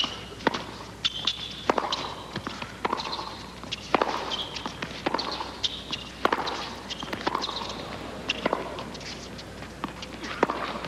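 Tennis rally on a hard court: racket strikes on the ball about once a second, with ball bounces and short high squeaks between the shots.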